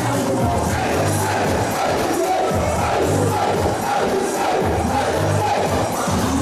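Loud dance music with a repeating bass line and a steady beat, and a crowd shouting and cheering over it.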